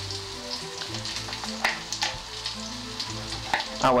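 Parsnips frying in olive oil in a pan, sizzling steadily, with a few sharp clicks of a knife on a wooden chopping board.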